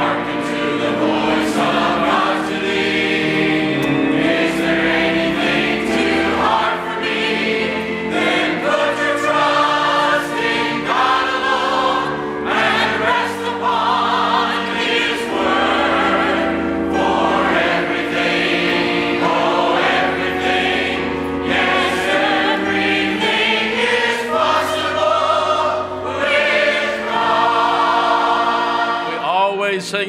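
A church congregation and choir singing a gospel chorus together, loud and steady, with the singing ending near the end.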